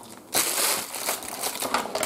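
Thin clear plastic blister packaging being picked up and handled, crinkling with many small clicks, starting about a third of a second in.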